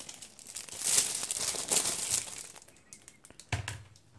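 Thin plastic wrap crinkling and rustling as it is pulled off a tablet keyboard dock. It swells twice, then gives way to a few light clicks near the end.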